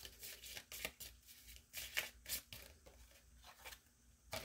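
Faint hand-shuffling of a deck of cards: a run of irregular soft card clicks and slides.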